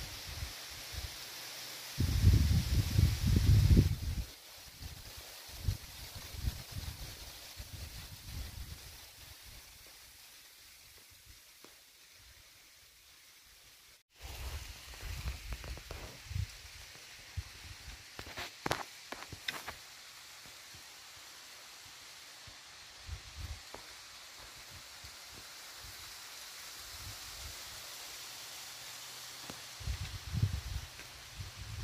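Rustling and low rumbling on the camera microphone, loudest from about two to four seconds in. After a sudden break near the middle, a few sharp clicks follow.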